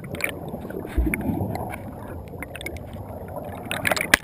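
Churning whitewater heard with the camera submerged: a muffled low rush with scattered bubble clicks and a low thump about a second in.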